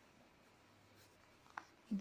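Faint handling of a paper exercise notebook as its page is turned and pressed flat, with a soft tick about a second in and a short brief sound near the end; the room is otherwise very quiet.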